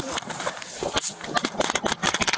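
Handling noise on a police body camera: clothing and bodies rubbing and knocking against its microphone in a quick run of scuffs and taps, densest in the second half.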